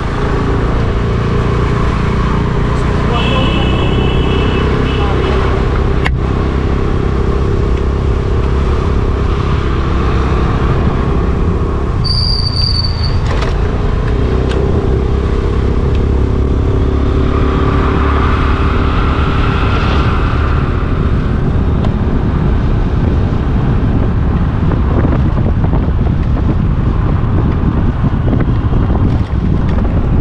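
Motorcycle engine running steadily while riding along a road, with constant wind and road noise on the microphone. Brief high tones sound about three and twelve seconds in.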